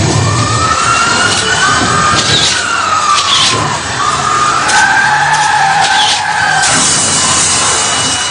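Recorded car sound effect played over the hall's sound system: tyres screeching in long squeals that rise and fall, with several sharp knocks in between, as for a road accident.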